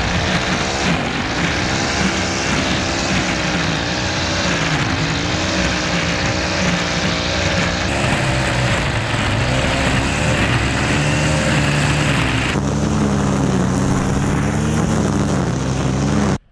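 Gas string trimmer running hard while cutting grass and weeds, its engine pitch wavering up and down as it works. The sound changes abruptly twice, about halfway through and again near three-quarters through.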